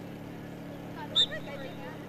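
Faint, distant voices of players on the pitch over a steady low hum, with one short, sharp high-pitched call about a second in.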